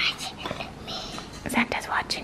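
Whispered speech, breathy and unvoiced, with a few light clicks near the end.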